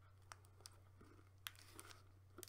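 Near silence: a few faint clicks and crackles as a wrapped fruit-and-nut bar is bitten and chewed, over a low steady hum.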